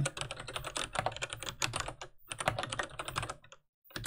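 Typing on a computer keyboard: two quick runs of key clicks with a brief break between them, stopping shortly before the end.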